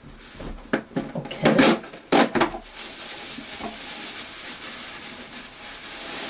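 Shredded paper packing and a cardboard box rustling as a hand digs into it: a few sharp rustles and knocks in the first two seconds or so, then a steady rustle.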